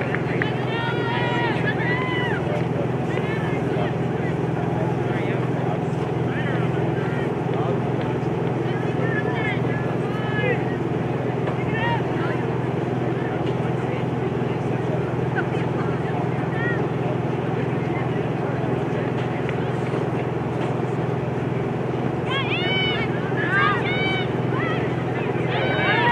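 Distant, indistinct shouts and calls from players and coaches on a soccer field, coming in short scattered bursts, over a steady low mechanical hum.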